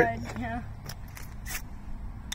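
Practice strikes on a ferro rod: a few short, sharp scrapes of the striker down the rod, the loudest about one and a half seconds in.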